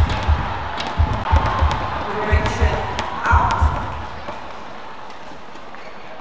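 Badminton rally: players' shoes thud on the court in quick repeated steps and rackets click sharply on the shuttlecock. A voice shouts about three seconds in. The thuds stop just before four seconds, leaving a quieter steady hall noise.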